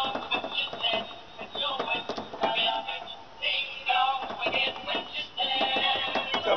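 Animated Halloween broom toy playing a song with a singing voice through its small built-in speaker, sounding tinny with little bass.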